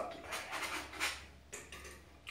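Palette knife working oil paint on a stretched canvas: a few short, soft scraping strokes.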